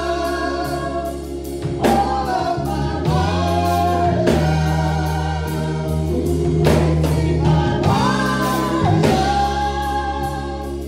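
Live gospel singing: women's voices through handheld microphones over sustained low accompaniment chords.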